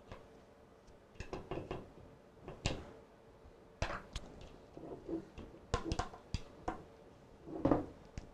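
Spatula scraping and knocking against a mixing bowl as thick cream cheese frosting is scooped out and dropped onto a cake. The soft scrapes and knocks come irregularly from about a second in, and the loudest is near the end.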